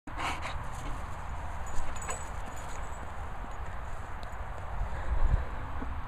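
Boxer dog panting near the microphone, over a constant low rumble of wind on the microphone.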